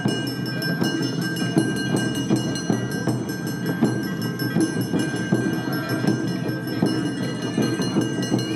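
Awa-odori festival music: a clanging metal hand gong (kane) with drums, keeping a quick, steady beat, with ringing high tones held over it.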